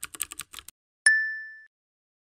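Keyboard-typing sound effect, a quick run of about seven clicks, then a single bright ding about a second in that rings out and fades over half a second.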